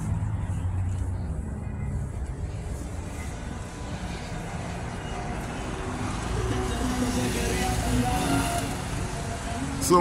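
Steady low rumble of city street traffic, with cars passing on the road.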